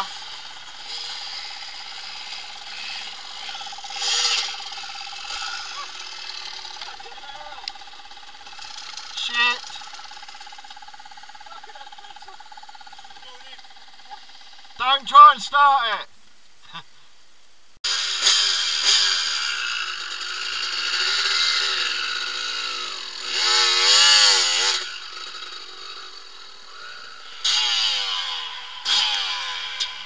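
Off-road motorcycle engines: a steady high engine note through the first half with short blips of throttle, then, after an abrupt change just past halfway, louder riding noise with a rushing hiss and an engine revving up and down.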